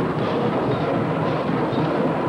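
Marching band playing in a stadium, heard distant and muddy: a steady, dense wash of sound with little clear melody or beat.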